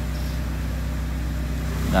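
Peugeot 206 engine idling steadily, a low even hum with a fast regular pulse, after its throttle position sensor wiring has been repaired.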